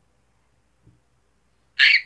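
Near silence, with one faint tick about halfway through; just before the end comes a short, loud, high-pitched squeal from a young girl.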